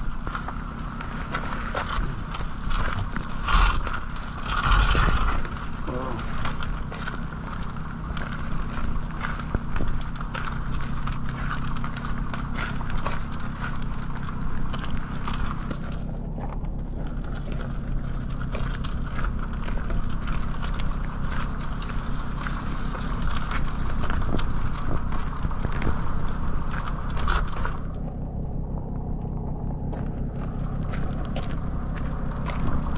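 Footsteps on a wet dirt path in the rain, with a steady low rumble of machinery and traffic and rain noise on the microphone.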